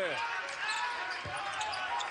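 Basketball game sound: a ball bouncing on the hardwood court as a player dribbles, over steady arena crowd noise, with a thump about a second and a quarter in.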